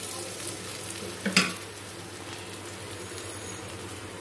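Oil sizzling steadily in an aluminium kadai on a gas stove, with a metal spatula stirring. The spatula gives one short clatter against the pan about a second and a half in.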